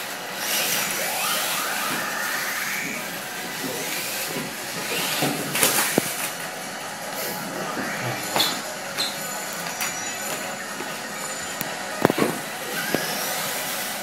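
Small radio-controlled Kyosho Mini-Z buggies running, their electric motors whining up and down in pitch, with several sharp knocks scattered through.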